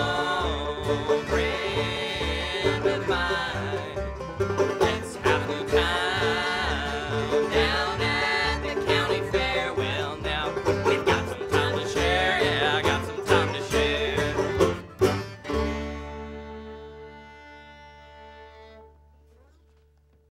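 Bluegrass band of acoustic guitar, upright bass, fiddle and banjo playing an instrumental passage with no singing. It ends on a final chord about fifteen seconds in that rings out and fades away.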